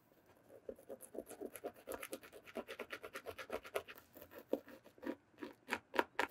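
A small rubber cleaning eraser block scrubbed briskly back and forth over a white leather sneaker upper, a quick run of short scratchy strokes, about six a second, starting about half a second in and thinning to fewer, sharper strokes near the end.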